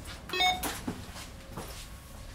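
A short, sharp metallic clack with a brief ringing tone about half a second in, followed by a few lighter clicks.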